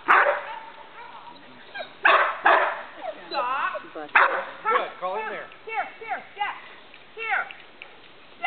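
A dog barking and yipping repeatedly in short bursts while working sheep, the loudest barks near the start, about two seconds in and about four seconds in.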